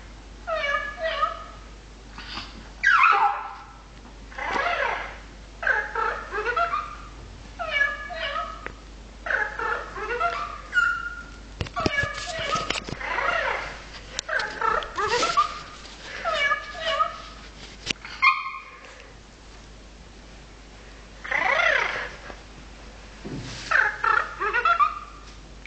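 Cat meows repeated over and over, one short call every second or so, pausing for a couple of seconds near the end before starting again.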